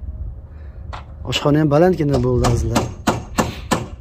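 A drawn-out voice with a wavering pitch, then rapid sharp knocks about four a second, evenly spaced, from about halfway through.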